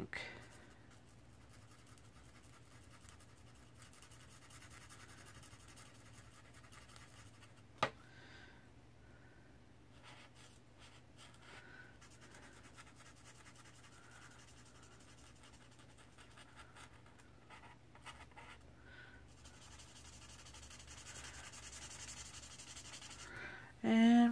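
Faint scratching and rubbing of an L'emouchet alcohol marker's tip on coloring-book paper as an area is filled in with repeated strokes, with a single sharp click about eight seconds in.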